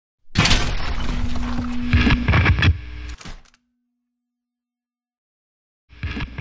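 Outro logo-reveal sound effect: a loud noisy rush with knocks and a low steady hum, lasting about three seconds and fading out, then silence, then a short burst of noise near the end as a glitchy TV-screen logo appears.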